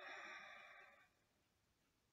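A person's soft breath out, a sigh through the mouth, fading away about a second in; then near silence.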